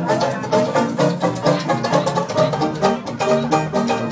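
Live Dixieland jazz band playing an instrumental chorus, the banjo strumming a steady beat of about two strokes a second under horns and drums.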